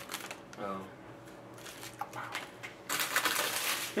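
Plastic trading-card pack wrapper crinkling and card stock rustling as a stack of cards is pulled from the pack and handled, loudest in the last second.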